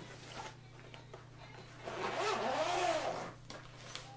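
A zipper on a fabric pouch pulled shut once, about two seconds in and lasting over a second, its scratchy pitch rising and then falling as the pull speeds up and slows. Soft handling rustles come before it.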